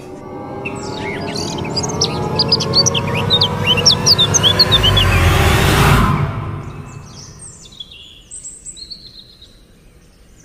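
Birds chirping in quick short whistles over a swelling rush of noise and low tones that builds and cuts off suddenly about six seconds in; fainter bird calls go on after the cut.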